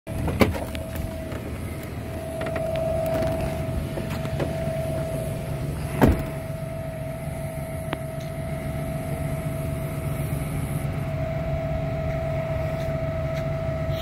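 Vehicle engine idling steadily, heard from inside the cab, with a steady higher hum over it. A couple of sharp knocks break in, the loudest about six seconds in.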